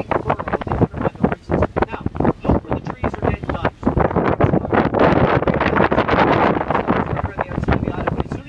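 Wind buffeting the microphone in irregular gusts on a moving boat, with a louder stretch of wind roar a little past the middle. Indistinct voices run underneath.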